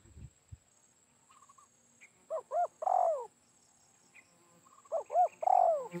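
Spotted dove cooing in two phrases a little over two seconds apart. Each phrase has two short rising-and-falling coos and then a longer, falling coo.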